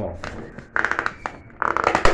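Rigid plastic latch piece of a PVC accordion door being worked into its track: two short bursts of rapid plastic clicking, about a second in and again near the end, as it snaps into place.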